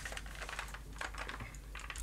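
Faint, irregular light clicks and ticks, like handling or tapping of small hard objects, in a quiet small room.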